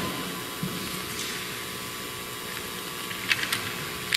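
Low, steady room noise with a faint hum, and a few light clicks about three and a half seconds in as a gilt metal chalice and paten are set down on the altar.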